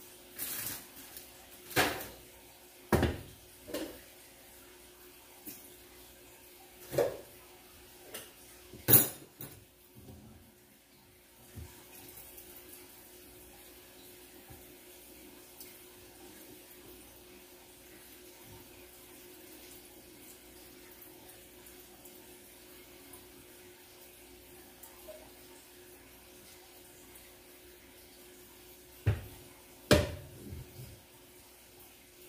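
Metal skillet and its strainer lid clanking: a series of sharp knocks over the first ten seconds as the pan of ground beef is taken off the gas burner to drain its liquid, the loudest about nine seconds in. This is followed by a low steady background and one more clank near the end.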